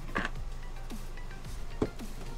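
Two light knocks from the plastic RV toilet being handled and lifted off its floor flange, the sharper one near the end, over faint background music with a low steady hum.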